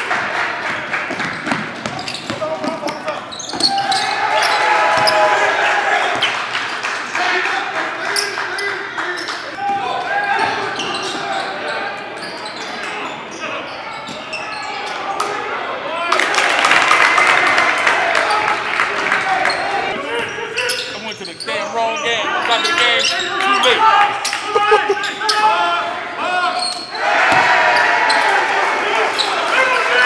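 Basketball game sound in a gym: a ball bouncing on the hardwood court over a steady mix of players' and spectators' voices shouting and calling out, echoing in the large hall.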